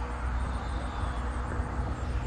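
Steady low engine rumble from out of sight, with a faint steady hum over it.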